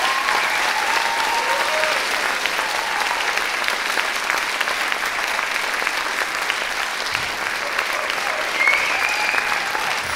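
Large audience applauding steadily, a dense even sound of many hands clapping, with a few voices calling out over it.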